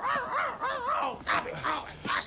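A talking pug's high, strained voice crying 'oh!' over and over, about three short cries a second, each rising and falling in pitch.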